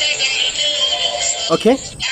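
Background music with a held, wavering melody, and a man's voice saying "okay" near the end.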